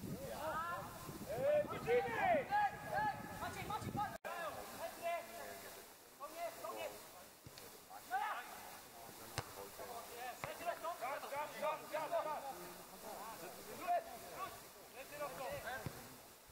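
Indistinct shouts and calls of voices across a football pitch, many overlapping and none clearly worded. They break off abruptly for a moment about four seconds in.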